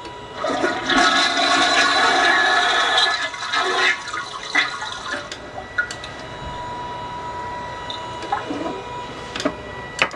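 Toilet flushing: a loud rush of water for the first three or four seconds, fading into the quieter, steady sound of the tank refilling, with a few sharp clicks later on.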